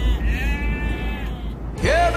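Sheep bleating: one long bleat lasting about a second, after the tail of another as it opens, over a steady low rumble.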